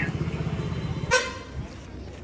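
A vehicle engine running with a low, rapid, even throb, then a short, high horn toot about a second in, after which the engine sound drops away.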